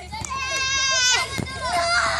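A young girl's long, high-pitched squeal, held steady for about a second, followed by a shorter cry near the end.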